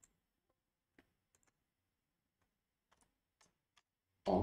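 Faint, scattered clicks of computer keyboard keys being typed, about eight taps at uneven intervals over near silence.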